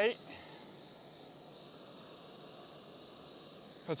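Decathlon canister gas stove burning with a faint, steady hiss while it heats a litre of water to the boil.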